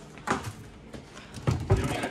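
Kitchen cabinet door being opened and a plastic strainer pulled off the shelf: a few short knocks and clunks, the loudest coming in quick succession near the end.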